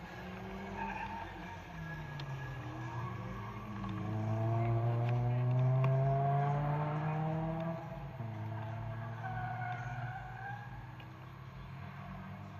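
Small petrol engines running. One climbs steadily in pitch as it revs up from about four seconds in, and drops off abruptly near eight seconds, the loudest part.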